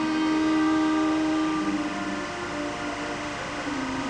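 Live rock band with horns and keyboards playing a soft passage of long held notes. The top note steps down in pitch about two seconds in and again near the end.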